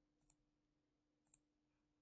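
Near silence with a faint steady hum, broken by two faint computer mouse clicks about a second apart.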